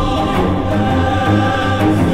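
Dramatic background music: a score with choir-like voices held over repeating low bass notes.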